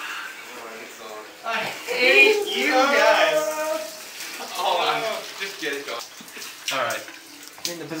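A shower running steadily in a tiled bathroom, with young men's voices and laughter over the water, loudest from about one and a half to three and a half seconds in.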